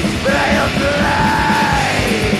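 Thrash metal band playing: fast, steady drumming and distorted guitars, with a yelled vocal and one long held note in the second half.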